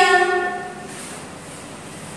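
A horn sounding one long steady note, a chord of several tones, that stops within the first second, leaving faint steady background noise.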